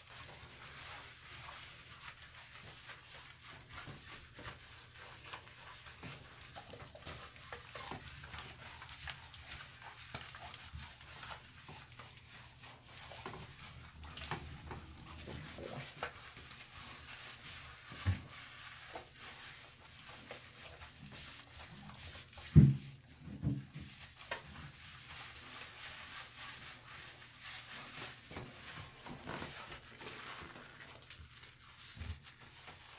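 Hands rubbing shampoo lather into a wet dog's coat: soft, steady squishing and rubbing. A short, loud thump comes about three-quarters of the way through, with a couple of smaller ones just after it and one a few seconds before.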